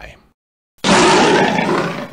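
A loud bear roar sound effect, starting abruptly a little under a second in, lasting about a second and a half, and cutting off sharply.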